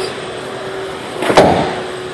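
The split rear seat back of an SUV being handled, giving a single soft thump a little over a second in, over a steady faint hum in the cabin.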